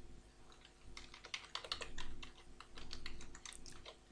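Computer keyboard being typed on: a run of quick, soft key clicks after a brief pause at the start.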